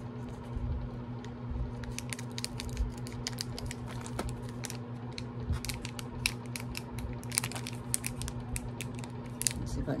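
Fingers and a fingernail picking and tugging at a sealed plastic packaging pouch, making irregular small crinkles and clicks, over a steady low hum.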